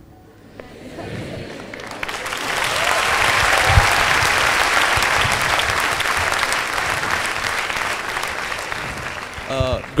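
Audience applauding in a hall. The clapping builds over the first few seconds, holds, then tapers off near the end.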